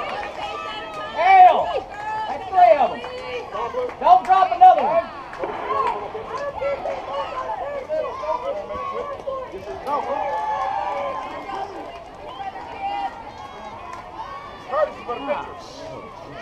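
Indistinct raised voices of softball players and spectators calling out across the field, with several louder shouts in the first five seconds and quieter talk after.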